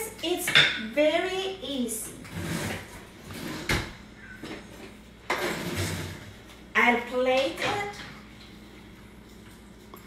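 Indistinct voice fragments mixed with kitchen handling noise: brief rustling and scraping, and one sharp knock just before four seconds in, typical of a drawer or cupboard being worked.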